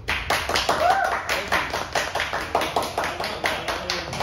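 A small audience clapping, starting suddenly at the end of a live jazz tune, with a voice calling out about a second in.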